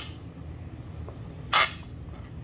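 A short, sharp scrape of a metal spoon across a plastic cutting board as diced bacon is pushed off it, about one and a half seconds in, over a steady low hum.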